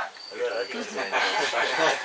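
A man chuckling softly, with a thin high-pitched chirp repeating about three times a second in the background that stops shortly after the start.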